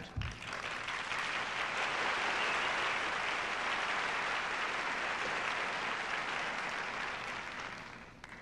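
Audience applauding steadily, building over the first second or two and tapering off near the end.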